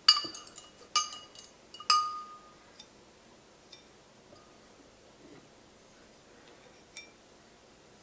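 Paring knife clinking against the rim of a glass jar as scraped vanilla seeds are knocked off into it: a quick run of sharp clinks in the first two seconds with the glass ringing after each, then a few faint ticks and one last clink about seven seconds in.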